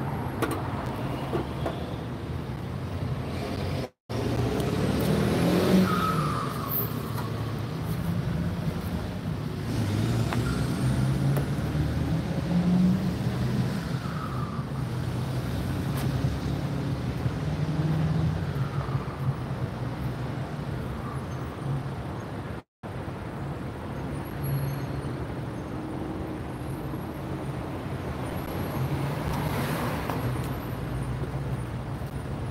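Road traffic: vehicles passing by over a steady engine hum and road noise. The sound cuts out completely for a moment twice, about four seconds in and again about twenty-three seconds in.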